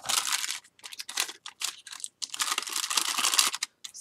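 Clear plastic bag crinkling and rustling as small cardboard die-cut pieces are handled and slid into it, in a few short bursts and then a longer stretch of about a second and a half near the end.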